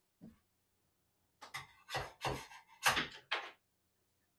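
A metal scraper scraping and clicking against a 3D printer's build plate as a small printed part is pried off. There is a brief scrape just after the start, then a run of sharp scrapes and clicks in the second half.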